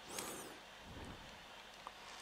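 Faint handling noise of a thin lavalier microphone cable being uncoiled by hand, rustling a little near the start, with a small click near the end.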